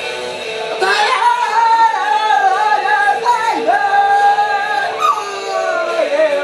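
A voice singing a cover song, holding long, high notes that bend in pitch, from about a second in.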